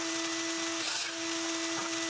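An electric motor running steadily in the shop: a steady hum with an airy hiss, broken by brief dropouts about a second in and near the end.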